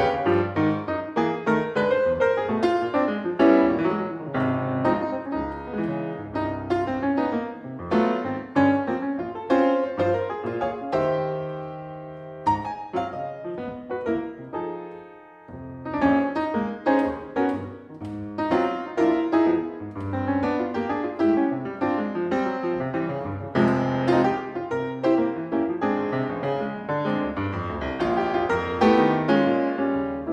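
Solo jazz piano on a grand piano, dense runs and chords. About eleven seconds in a chord is held and rings out, fading for a few seconds, before the playing picks up again.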